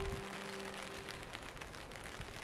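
Steady rain patter with many small drop ticks, while the last held note of soft background music dies away in the first second, leaving the rain on its own.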